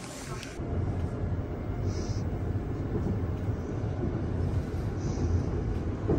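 Subway train running, heard from inside the carriage: a steady low rumble.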